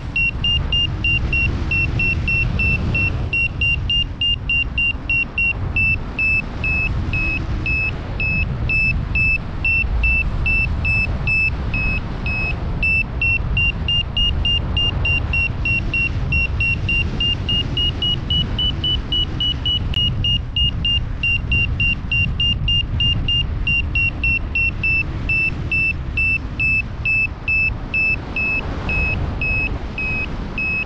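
Paragliding variometer giving its climb tone: rapid, evenly spaced high beeps whose pitch rises slightly about two thirds of the way through and then settles back. This signals that the glider is climbing in rising air. Wind rumbles on the microphone underneath.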